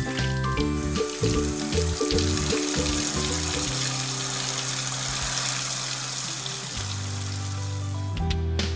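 Cheerful background music over a steady hiss of running water, which sets in about half a second in and carries on to near the end.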